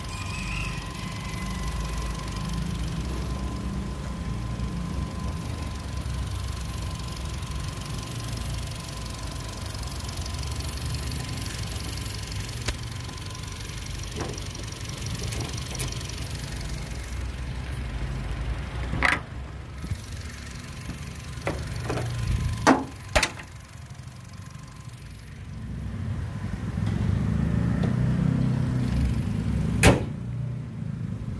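Honda Brio's 1.2-litre four-cylinder i-VTEC engine idling steadily. About two-thirds of the way through come a few sharp knocks, the loudest two close together, as the bonnet is lowered and shut.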